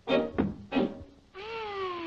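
Early-1930s cartoon soundtrack: two short, clipped musical notes, then a long wail that slides steadily down in pitch for about a second, starting halfway through.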